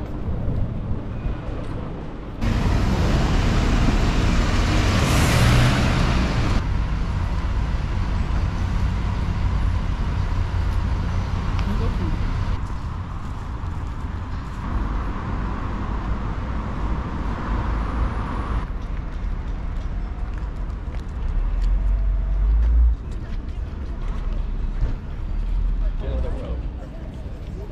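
Street ambience with road traffic passing, broken into several segments that change abruptly.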